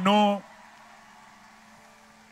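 A man's amplified voice ends a word about half a second in, followed by a pause holding only a faint, steady low hum of room tone.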